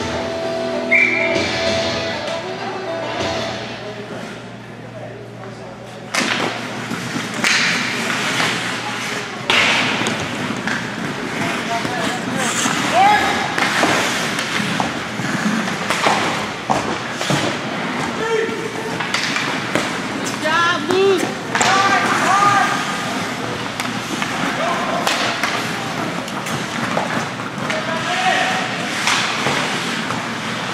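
Ice hockey play in a rink: repeated thuds and slams of players and the puck against the boards, with shouts from players and spectators. Music plays in the first few seconds.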